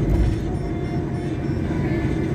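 Inside a moving car: steady engine and tyre rumble at highway speed, with a brief low thump just after the start.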